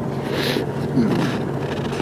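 Steady low hum of an idling vehicle engine, with a brief rustle about half a second in and faint murmured voice sounds.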